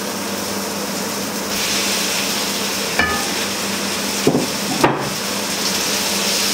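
Chicken strips sizzling as they fry in a hot wok of coconut oil and onions, the sizzle getting louder about a second and a half in as the chicken goes into the pan. A sharp click with a short ring about halfway through, then two knocks of the wooden spoon against the wok near the end.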